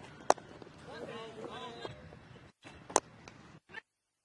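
Two sharp cracks of a cricket bat striking the ball, the first just after the start and the loudest, the second about three seconds in, with a man's voice calling out between them.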